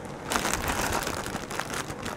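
Clear plastic bag crinkling as a bagged roll of rhinestone mesh is handled, a dense run of crackles starting a moment in.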